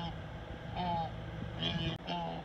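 People talking, the words hard to make out.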